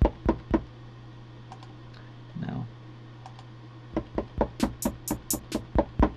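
Fingers tapping the pads of a Native Instruments Maschine controller, with no drum sounds: the group's audio output is not yet routed. There are a few taps at the start, then a quicker run of sharp taps in the last two seconds, over a steady low hum.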